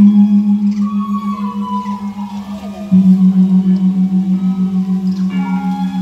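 Balinese gamelan music accompanying a dance: a deep gong struck at the start and again about three seconds in, each stroke ringing on with a fast shimmering pulse, under quieter higher melodic notes.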